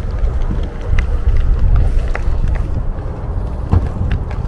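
Wind rumbling against the camera microphone as it moves, with a few scattered light clicks through it.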